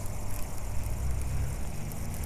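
A steady low rumble under a faint hiss, with no distinct event standing out.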